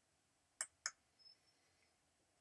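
A computer mouse button clicking twice in quick succession, about a quarter second apart, as a menu item is chosen, with a fainter tick after; otherwise near silence.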